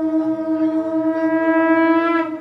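A conch shell (shankha) blown during arati in one long steady note with bright overtones, growing louder toward the end.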